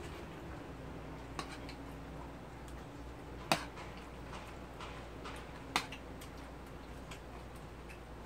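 Eating sounds: a metal fork clicking a few times against a bowl while noodles are eaten, the sharpest click about three and a half seconds in, another near six seconds. A faint steady hum lies under it.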